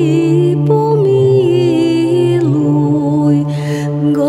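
A woman's voice singing a slow, melismatic Orthodox church chant melody that steps downward in pitch, over a steady held low drone (ison). There is a short breathy hiss near the end.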